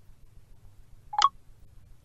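A single short electronic chirp from an iPhone's VoiceOver screen reader, rising slightly in pitch, about a second in. It is VoiceOver's sound as it answers the two-finger scrub gesture, which takes it back one screen.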